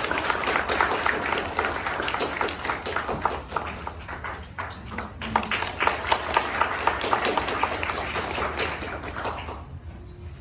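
Audience applauding: a dense patter of many people clapping that thins briefly about four seconds in, fills in again, then dies away just before the end.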